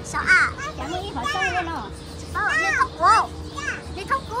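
Young children's high-pitched voices: several short excited squeals and exclamations, each rising and falling in pitch, over a steady faint background hum.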